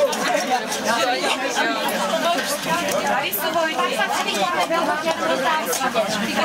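People talking at once: a continuous chatter of several voices in a room.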